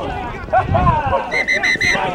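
Spectators shouting, then near the end four quick, evenly spaced high whistle pips of one steady pitch.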